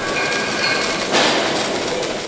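Electric arc welding: the arc crackling and hissing steadily, a little stronger just past a second in.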